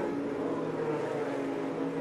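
IndyCar engines, 2.2-litre twin-turbo V6s, running at a steady, low pace under the caution flag, heard as an even drone with no rise or fall.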